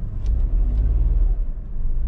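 Low, steady rumble of a Suzuki S-Presso's small three-cylinder engine and tyres, heard from inside the cabin as the car rolls slowly through a turn.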